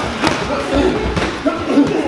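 Muay Thai sparring strikes landing: a few sharp thuds and smacks of shins and boxing gloves hitting shin guards and body, spread across the two seconds.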